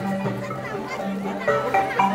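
Marimba playing the dance music in long held notes, with the melody picking up again about one and a half seconds in. Children's voices and other crowd chatter sound over it.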